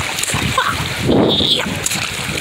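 Shallow seawater splashing as a plush toy is pushed and dragged through it by hand, with a louder splash about a second in.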